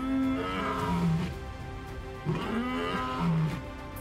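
Male lion roaring: two long calls, each falling in pitch, about two seconds apart.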